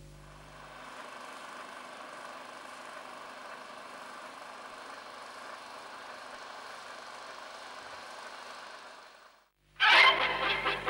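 9.5mm film projector running, a steady mechanical noise that fades away just before the end.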